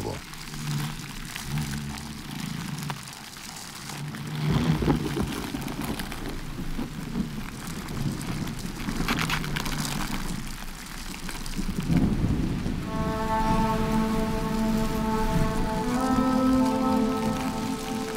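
Steady rain with low rumbles of thunder swelling about five seconds in and again around ten seconds. Held music chords come in about two-thirds of the way through.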